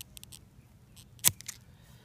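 Felco bypass pruners snipping through a young moringa stem: one sharp snap about a second in, with a few lighter clicks of the blades around it.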